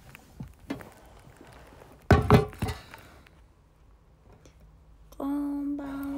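A smartphone being handled: faint rustles and clicks, then a few loud knocks about two seconds in, the loudest sound here. Near the end a woman hums one steady note.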